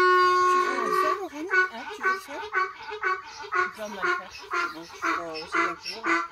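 A miniature donkey braying: one long held note, then a run of short rhythmic honking hee-haw cycles about two a second.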